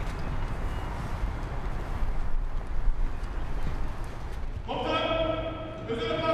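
Footsteps of a group of soldiers walking on a paved path, many small overlapping steps over an outdoor rumble. About four and a half seconds in, a long held call from voices starts and carries on.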